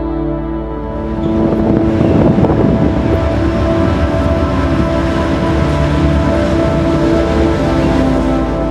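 Amtrak passenger train crossing a steel truss bridge overhead, its noise coming in about a second in and continuing under steady ambient background music.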